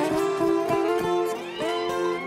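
Ten-string viola caipira picked, playing an instrumental intro of single plucked notes that ring on one after another.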